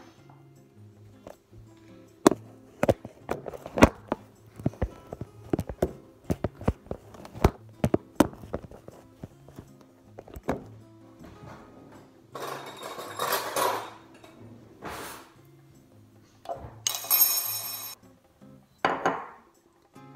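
Quiet background music, over which come a quick run of sharp clicks and knocks from things being handled on the kitchen counter in the first half. Several short bursts of rustling noise follow, the brightest about three seconds before the end.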